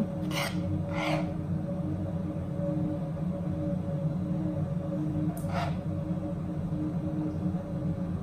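Jackfruit jam being spooned into a small ceramic pot: three short, soft swishes, about half a second, one second and five and a half seconds in, over a steady low hum.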